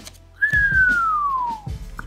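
One long whistle: a single clean note that slides steadily down in pitch for just over a second.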